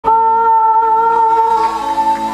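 A female vocalist holding one long, steady sung note into a handheld microphone, amplified on stage. It cuts in abruptly at the start, and lower accompanying notes come in beneath it near the end.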